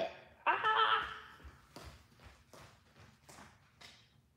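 A woman's short exclamation, then footsteps walking away: about six steps, roughly two or three a second, growing fainter.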